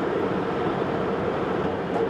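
Concrete pump truck cruising on an expressway, heard from inside the cab: steady engine and road noise with a constant hum.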